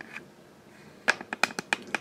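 Handling noise: after about a second of near quiet, a quick, uneven run of about eight light clicks and taps.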